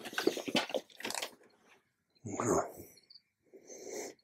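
Crackly scraping and rustling of a scoop digging into loose terrarium soil, a rapid run of small clicks through the first second or so, then a short louder rustle about two seconds in.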